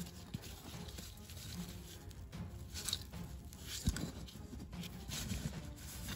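Faint rustling and scraping of dry ash and soil as gloved hands tip an earthenware jar and pour ash out of it, with small clicks and one sharper knock about four seconds in.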